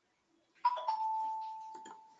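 A two-note chime: a sharp higher note followed at once by a slightly lower one that is held and fades away over about a second.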